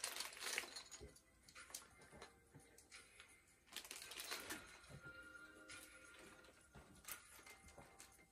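Near silence with scattered faint clicks and rustles of playing cards and small plastic train pieces being handled on a game board.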